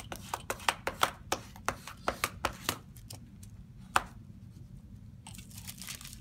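Wax paper ticking and tapping under pressing fingers, about four or five sharp ticks a second for the first three seconds, as it is smoothed down over a freshly glued paper cover. One more tap comes about four seconds in, and near the end the wax paper rustles as it is lifted off.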